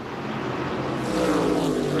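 Whelen Modified race cars' V8 engines running at speed on the track. About a second in, a car passes close by: its engine note grows louder and drops in pitch as it goes past.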